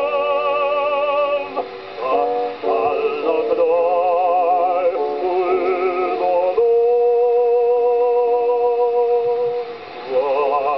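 Baritone voice singing with vibrato from an early single-sided 78 rpm record, its sound cut off above the highest treble. There is a short break between phrases about two seconds in, and a long held note through the second half.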